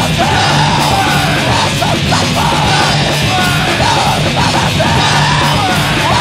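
Hardcore punk recording: distorted electric guitar, bass and drums playing continuously under a harsh yelled vocal.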